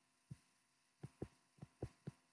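Pen stylus knocking softly on a tablet screen while handwriting: five faint, short, low taps, one early and then two quick pairs about a second in.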